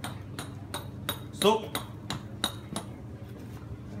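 Hand hammer striking an alabaster blank to rough out a vase. The taps are sharp and ringing, about three a second, for roughly the first three seconds.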